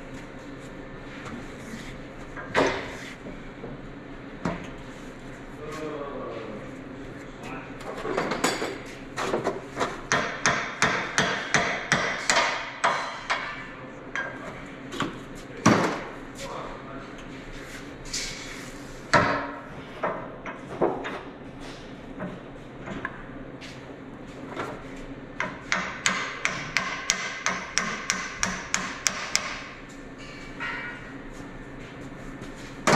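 Hammer tapping on a steel part: single strikes, then quick runs of blows at about three or four a second, the last run ringing.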